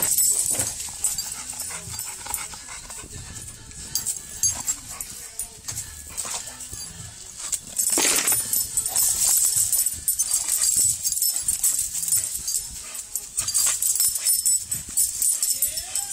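Blue pit bull hanging from a rope spring pole, making dog noises amid scuffing and creaking as it tugs and swings on the rope. It gets louder and busier about halfway through.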